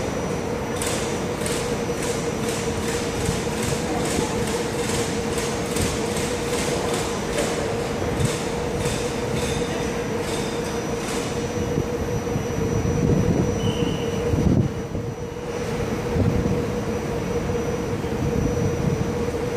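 SMRT C151B metro train moving off along the elevated track, its wheels clicking at a steady beat of about two a second over the rail joints, fading away after about eleven seconds, over a steady hum. A low rumble swells near the end.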